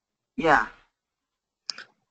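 A single short spoken word, then a brief click near the end: a computer mouse click opening a menu in the design software.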